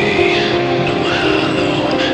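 Instrumental music from the song: sustained chords under a high, sliding lead line, at an even loudness.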